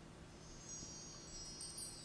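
Faint, high shimmering chime sound effect, a magic-sparkle sound, starting about half a second in and swelling slightly.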